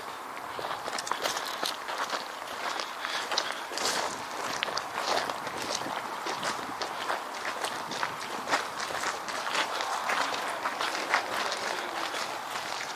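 Footsteps walking over a gravel and gritty tarmac path, a steady irregular run of crunching steps.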